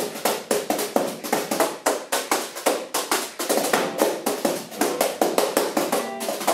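Improvised percussion on desktop objects played with drum brushes: a quick, even swing rhythm of taps and slaps, about four a second, over acoustic guitar chords.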